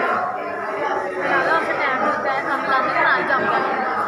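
Chatter of several people talking over one another in a large, busy room.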